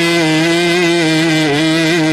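A man's voice holding one long sung note at a steady pitch with a slight waver: the drawn-out end of a phrase in a chanted sermon delivery.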